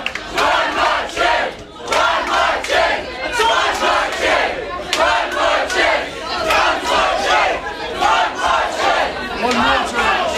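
A packed club audience cheering and shouting, many voices at once, with hands clapping throughout.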